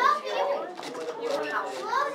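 Overlapping voices of young children and adults chattering in a room, with no one voice clear.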